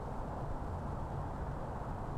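Steady low rumbling noise with no distinct events, strongest in the bass.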